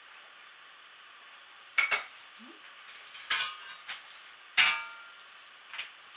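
A few sharp metallic clinks and knocks, the first a quick double strike, each ringing briefly; the loudest comes just past halfway.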